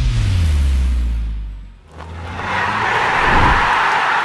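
Intro-sting sound effects: a deep bass tone that falls in pitch and fades out over about two seconds, then a whoosh that swells up through the second half.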